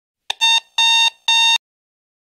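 Electronic alarm clock beeping three times, short steady-pitched beeps about half a second apart, after a brief click.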